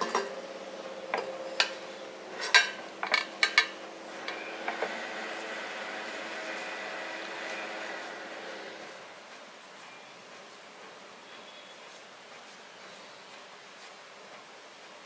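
Several sharp clinks and taps of kitchenware, a glass mixing bowl and steel idli plate, in the first five seconds while kozhukattai dough is pressed by hand, over a steady low hum that fades out about nine seconds in.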